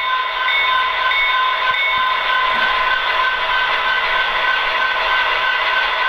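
Soundtraxx Tsunami 1 sound decoder in an HO-scale Athearn Genesis SD70 playing its locomotive bell, ringing steadily at about three strikes a second through the model's small speaker, over the decoder's steady diesel engine sound. The bell is on F3.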